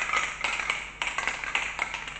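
Mixing ball rattling inside an aerosol spray-paint can as the can is shaken by hand. It clacks in quick repeated strokes, about four to five a second, fading near the end. The ball is stirring the paint before spraying.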